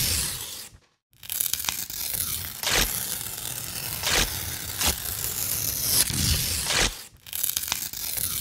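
Sound-design noise from a projection show's soundtrack: a harsh, tearing, rasping noise that plays in blocks which cut off abruptly. It breaks off briefly about a second in and dips again near the end. A few sharp hits at uneven intervals stand out within it.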